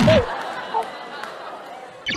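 Speech and overlapping chatter: a loud vocal outburst at the start, then mixed voices that fade.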